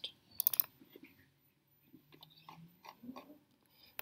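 A short cluster of faint clicks about half a second in, then scattered quieter clicks and a brief low hum, over quiet room tone.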